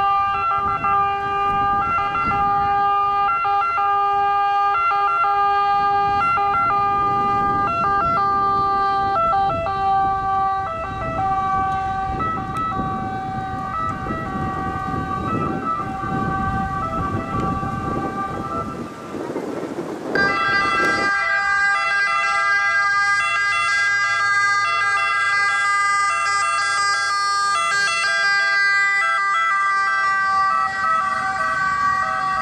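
Ambulance sirens sounding with a two-tone pattern switching back and forth. A rushing noise swells in the middle, and about twenty seconds in the sound changes abruptly to a louder, closer siren.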